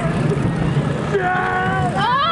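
A rider screams one long high scream, starting a little past halfway, over the steady rumble of a wild mouse roller coaster car in motion.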